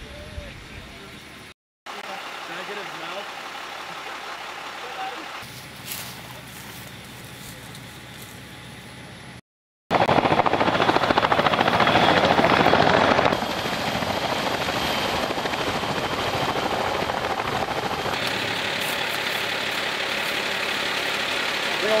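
Tandem-rotor CH-46 Sea Knight helicopters flying in low, a dense steady rotor and turbine noise that starts abruptly about ten seconds in, loudest for a few seconds and then a little lower and steady. Before it, a quieter stretch of field sound broken by cuts.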